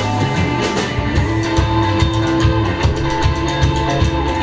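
Live rock band playing: electric guitar over a drum kit, with quick, evenly repeating cymbal strokes from about a second in.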